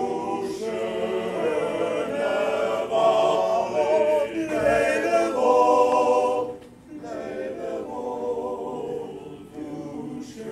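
Small men's chorus singing a cappella in close harmony, the voices holding sustained chords. The singing swells in the middle and breaks off briefly for a breath about two-thirds through before the next phrase.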